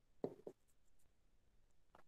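Faint strokes of handwriting on an interactive touchscreen board: a few short scratches in the first half second.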